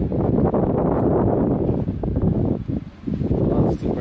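Veer Cruiser stroller wagon's wheels rolling over concrete: a steady low rumble that drops away briefly near the end.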